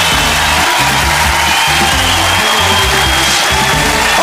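Television show theme music with a moving bass line, over a steady wash of studio audience noise.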